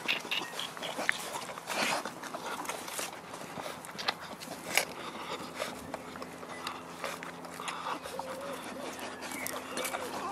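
Boerboel puppies jostling and nursing at their mother, with scattered rustles and clicks and a few faint whimpers near the end.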